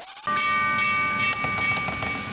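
A loud edited-in transition sound effect: a brief rising glide, then a held chord of whistle-like tones over a rushing noise, like a train horn.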